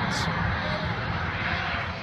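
Boeing 747 SuperTanker fire bomber flying low overhead during a retardant drop, its four jet engines giving a steady rushing roar.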